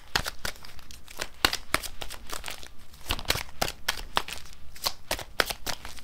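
A deck of tarot cards being shuffled by hand: a quick, uneven run of light snaps and rustles as the cards slip against each other, several a second.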